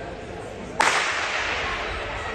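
A starting pistol fired once, about a second in: a single sharp crack that rings on and fades slowly in the echo of the big indoor hall.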